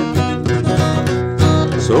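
Acoustic guitar strummed and picked at a steady beat between sung lines, chords ringing on. A man's singing voice comes in right at the end.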